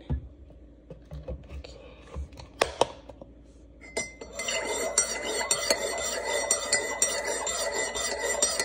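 Metal spoon stirring coffee in a mug: rapid, continuous clinking with a ringing tone. It starts about halfway through, after a few scattered clinks.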